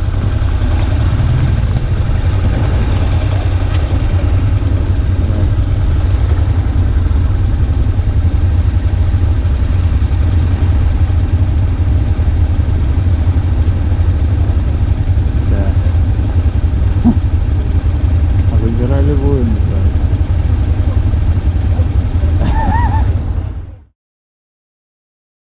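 Steady low rumble of a Honda NC750X motorcycle riding slowly, engine and wind noise on an on-bike camera microphone, with a brief voice near the end. The sound cuts off abruptly just before the end.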